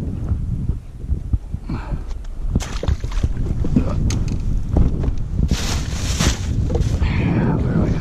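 Wind buffeting the microphone, a steady low rumble, with short hissing rushes about two and a half seconds in and again around six seconds in.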